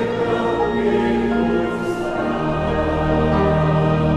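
Congregation singing a hymn in Portuguese with piano accompaniment, led by a song leader; a low bass chord comes in about two and a half seconds in.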